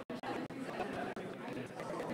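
Indistinct chatter of many people talking at once in small discussion groups, with no single voice standing out.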